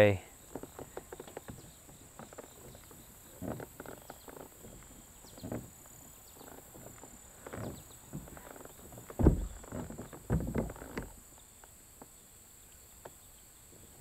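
Hobie kayak's Mirage Drive pedal fins knocking on the stream bed in shallow water: scattered light knocks, then two heavier thumps about nine and ten seconds in.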